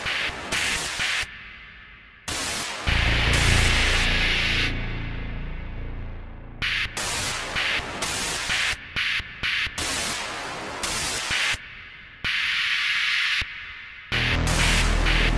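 Techno track in a breakdown with no kick drum: short, chopped bursts of hissing noise, broken by a couple of quiet dips, with a low droning bass for a few seconds early on.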